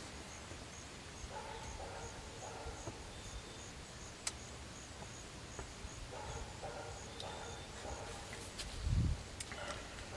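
Faint dog barking in two short runs a few seconds apart, over quiet outdoor ambience, with a faint high chirp repeating about twice a second. A soft low thump comes near the end.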